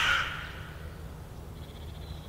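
A crow cawing: one call right at the start that fades within half a second, then a fainter call near the end.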